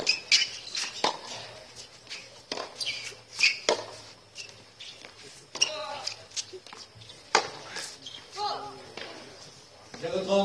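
Tennis rally: a ball struck by rackets and bouncing on a hard court, sharp pops every second or two, with spectators' voices in between.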